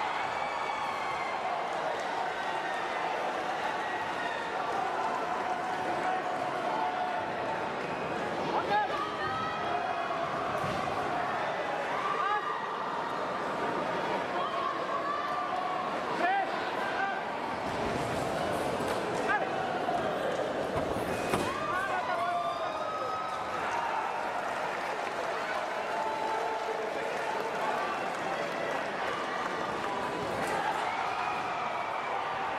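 Fencing-hall ambience: a steady hubbub of many voices in a large hall, with a few short sharp knocks and squeaks scattered through it, from footwork and blades on the piste.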